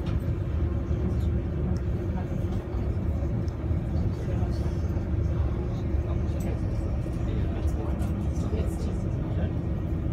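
A boat's engine running steadily: an even, low drone with a faint steady hum above it.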